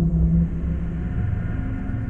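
Dark ambient drone: a low rumble with long-held deep notes, one fading about a second in and another taking over.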